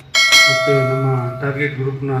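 A bright bell-like ding, the sound effect of a YouTube subscribe-button animation: it strikes a fraction of a second in and rings out over about a second.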